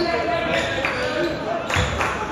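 A basketball dribbled on a hardwood gym floor, its bounces about a second apart ringing in the hall, under indistinct shouting voices.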